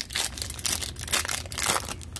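Foil wrapper of a hockey card pack being torn open by hand: an irregular run of crinkling and ripping.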